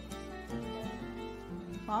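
Background music: a plucked string instrument playing a light tune, its notes changing about every half second.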